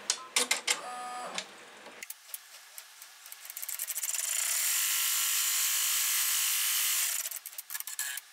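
Multi-needle embroidery machine sewing a placement outline. It starts with a burst of clicking and whirring, ticks quietly for a couple of seconds, then runs steadily at speed for about three seconds before winding down near the end.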